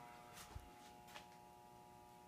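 Near silence with a faint, steady electrical hum from a DieHard battery charger running on its 2-amp setting as it powers the electrolysis, and two faint clicks about half a second and a second in.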